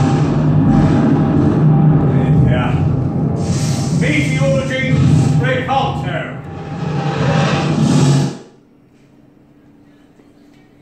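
Loud theatrical sound effect from the wand shop's show system as a wrong wand misfires: a dense din with heavy low end. Voices rise over it in the middle, and it cuts off sharply about eight seconds in.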